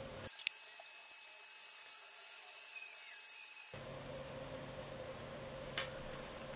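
Quiet room tone with a faint click about half a second in and two short sharp clicks near the end, the sound of a wristwatch's buttons being pressed.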